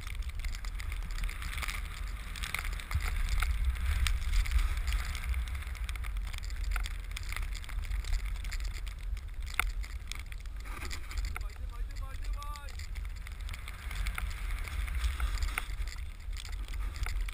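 Wind buffeting the camera microphone over the steady hiss of a splitboard sliding through fresh powder snow. A person's voice calls out briefly about two-thirds of the way through.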